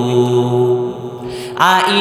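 A man's voice chanting a line of an Islamic sermon in a melodic tune, sung into a microphone. A long held note fades about a second in, and a new phrase begins with a rising glide near the end.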